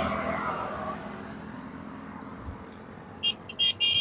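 Soft splashing of liquid in a steel pot as a cloth bundle is worked by hand, fading within the first second. Near the end, a quick run of short, high-pitched electronic beeps.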